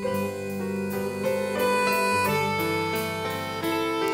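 Piano playing a slow passage of chords and single notes, a fresh note or chord struck two or three times a second.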